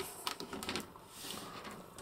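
Faint light clicks and handling noise of small plastic action-figure nunchucks being picked up and fiddled with in the fingers.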